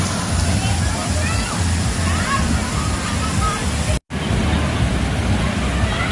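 Steady splashing rush of water from water-park spray fountains falling into a pool, with faint distant voices over it. The sound cuts out for an instant about four seconds in.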